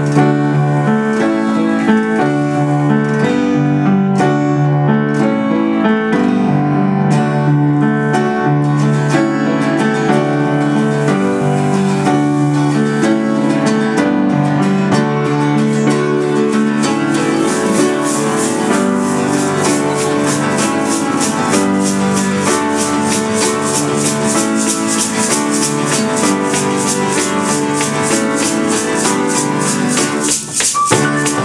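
Upright piano and strummed acoustic guitar playing a folk-pop tune together, with a metal shaker coming in about halfway through and keeping a steady rhythm.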